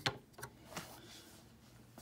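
A few light clicks and taps of hands handling a model jet turbine engine and its tail cone in their mount: one sharp click at the start, a couple more about half a second in, and a faint one near the second mark.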